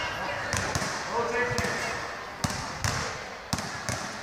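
Several basketballs being dribbled on a sports-hall court, bouncing at an irregular, uneven pace as more than one player dribbles at once.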